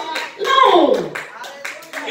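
Scattered hand claps, uneven in timing, with a voice calling out about half a second in that slides sharply down in pitch, in a church sanctuary during preaching.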